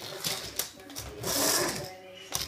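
Plastic toy animals tapped and clattered rapidly against a wooden floor and plastic blocks, a quick run of clicks, with a loud hissing noise in the middle.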